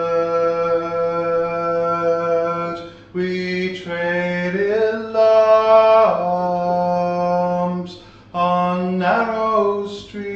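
A man singing unaccompanied, drawing out long, slow held notes of a dirge. He takes short breaths between notes and slides up in pitch into some of them.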